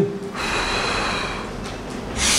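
A person breathing out hard through the mouth in one long hissing breath of a little over a second, which starts about a third of a second in. It is a breath timed with the effort of a dumbbell row.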